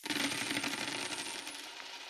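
Sound effect of coins pouring and jingling: a dense clatter of many small metallic clicks that starts abruptly and fades away over about a second and a half.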